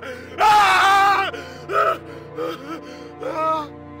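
A man screaming: one long scream about half a second in, then shorter anguished cries and gasps, over a steady low music drone.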